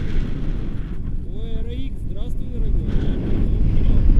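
Strong wind buffeting the microphone of a camera carried in flight under a tandem paraglider. A brief voice comes through the wind between about one and two and a half seconds in.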